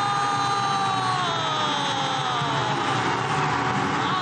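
A football commentator's single long held shout, sliding slowly down in pitch without a break, over steady stadium crowd noise as a goal goes in.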